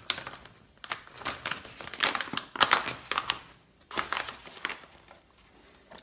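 Crinkling of a plastic packet of raw cacao powder being opened and handled, in four short rustling spells that die away about five seconds in.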